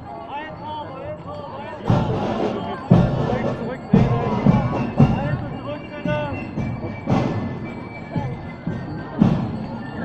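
Drum beats from a parade band, a heavy thud roughly once a second with a few gaps, over the chatter of a crowd.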